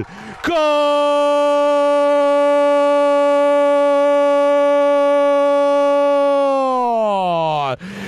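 Football commentator's long held goal cry ("Goooool"), one note sustained for about six seconds that falls in pitch and breaks off near the end.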